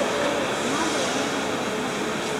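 Railway passenger coaches rolling past on the rails, a steady, even rolling noise of steel wheels on track.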